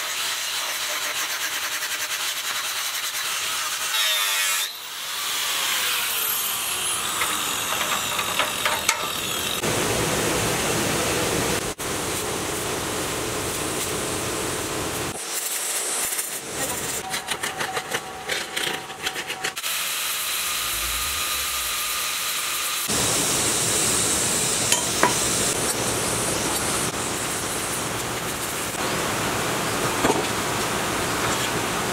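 A series of short metalworking shots: an angle grinder cutting through steel plate, and midway an electric arc welder crackling irregularly as a steel ring is welded.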